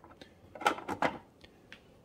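A few short clicks and knocks from handling the Keurig K-Slim coffee maker's plastic body, the two loudest about two-thirds of a second and one second in, with lighter clicks around them.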